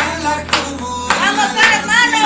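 Hands clapping in a steady beat, roughly one clap every 0.6 seconds, along with a song of recorded music and singing.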